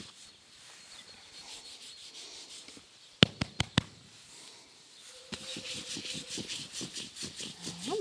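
A hand rubbing a horse's coat in quick, rasping strokes, about five a second. A little past the middle come four sharp clicks in quick succession, the loudest sounds here.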